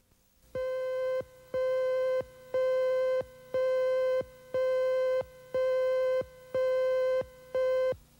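Countdown beeps from a TV news tape's countdown slate. One steady electronic tone sounds eight times, about once a second, each beep lasting most of a second, marking the numbers counting down before the next story.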